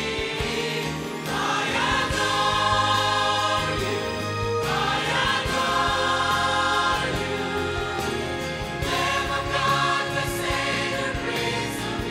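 Mixed choir of men's and women's voices singing a sacred song in sustained chords, moving to a new chord about every four seconds.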